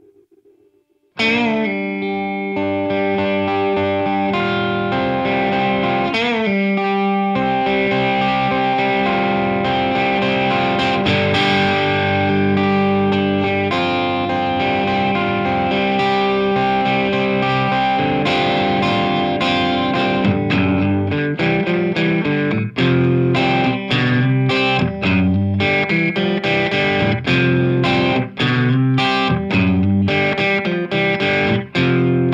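Electric guitar played through a Way Huge Saucy Box overdrive and an MXR Carbon Copy Bright analog delay, coming in suddenly about a second in. Held, overdriven notes with a bend around six seconds give way to short, choppy strums in the last third.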